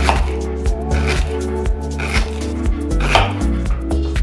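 Background music with a steady beat, over the repeated knocks of a chef's knife slicing raw fennel on a wooden cutting board.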